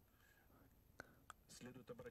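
Near silence: a pause in speech, with two faint clicks about a second in, then a faint voice speaking quietly from about halfway through.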